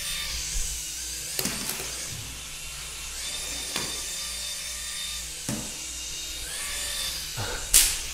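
Whirly Ball flying toy's twin propellers whirring in a thin, drill-like whine that shifts in pitch a few times as the ball drops and climbs. A few light clicks, and one sharp knock near the end.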